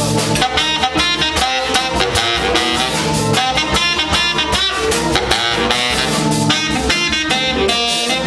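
Live soul-jazz band: a baritone saxophone playing the lead over organ, guitar, bass and a drum kit keeping a steady beat.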